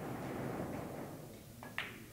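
Billiard balls rolling on the table cloth, then two sharp clicks of balls knocking together near the end.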